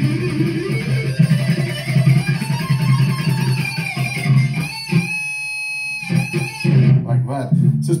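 Electric guitar, tuned down a whole step to D, playing a busy picked lead passage. About five seconds in, one note is held for about a second before the playing picks up again.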